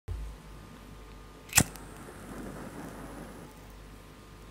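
Intro sound effect: a low thump at the very start, then a single sharp crack about a second and a half in, followed by a thin high ringing tone and a soft rumble that fade out before the end.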